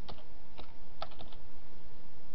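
Computer keyboard being typed on: a scattered run of irregular key clicks as a short word is entered.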